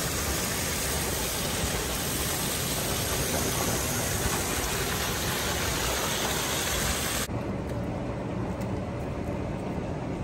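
Water from curved metal spout jets pouring and splashing onto a pool's surface, a steady rushing splash. About seven seconds in it turns duller and a little quieter.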